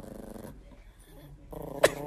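Chihuahua growling quietly, with one short sharp sound near the end.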